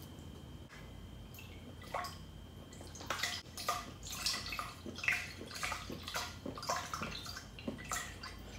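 Broth poured from a carton into a Le Creuset pot, splashing and glugging unevenly. A single light tap comes about two seconds in, and the pour starts about three seconds in.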